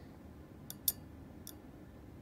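Three small sharp metal clicks, the second the loudest, as tweezers and a screwdriver work on an opened 2.5-inch laptop hard drive, turning the platter and pulling back read/write heads stuck to it.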